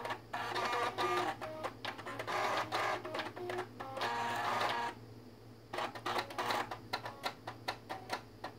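A musical floppy drive array of six floppy drives, their head stepper motors buzzing out a pop melody as rapid clicking, pitched notes. The tune breaks off briefly about five seconds in, then resumes with sparser, choppier notes.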